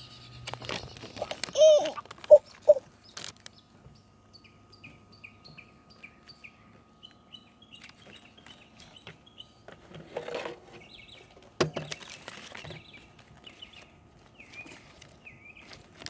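A bird chirping in runs of short, evenly repeated high notes, after three short loud calls about two seconds in. Past the middle, paper and plastic packaging rustle, with one sharp knock.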